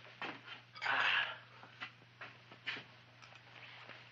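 Faint mouth and throat noises from a dental patient having his open mouth probed: a short breathy grunt about a second in and a few small scattered clicks, over a steady low hum.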